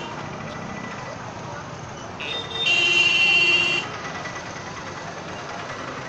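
Street traffic and crowd voices at a busy road junction. About two seconds in, a vehicle horn sounds: a short toot, then straight after it a longer blast of about a second on a different pitch.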